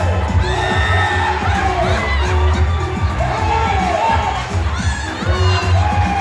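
An audience cheering and shouting over loud, upbeat music with a heavy, pulsing bass, with a few high whoops near the end.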